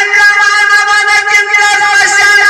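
Live Kannada bhajana folk music: one long note held steady in pitch over a light running percussion beat.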